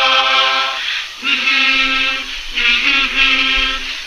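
Singing in long held notes, three in a row, each about a second long with short breaks between them.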